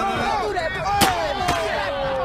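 Two sharp paintball gun shots about half a second apart, over several men shouting and whooping.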